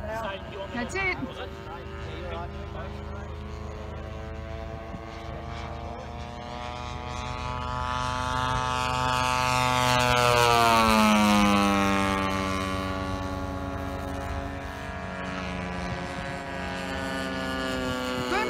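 Engine and propeller of a radio-controlled F8F Bearcat warbird model flying past. The steady engine note climbs in pitch and loudness as it approaches, is loudest about ten seconds in, then drops in pitch as it passes and draws away.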